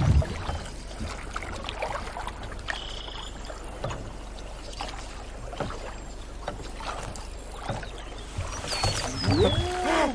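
Water lapping and sloshing against the hull of a small fishing boat on the river, over a steady low rumble, with scattered light knocks and a few short high chirps.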